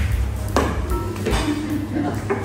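Pool balls clicking on a pool table as a shot is played: the cue strikes the cue ball and balls knock together, in a few sharp clicks under a steady low hum.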